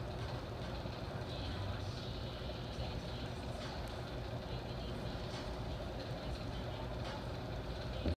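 Steady low rumble of room or machinery noise, with a few faint light knocks.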